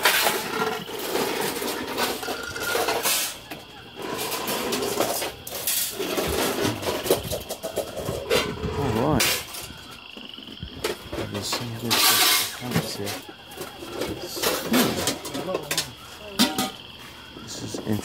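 Indistinct talking, with scattered clicks and knocks and a short loud rustle about twelve seconds in.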